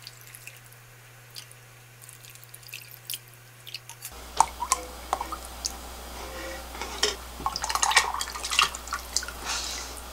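Beef bone broth pouring and dripping from a stainless steel mixing bowl into plastic containers, with scattered small clicks and clinks. It is quiet for the first few seconds and busier from about four seconds in.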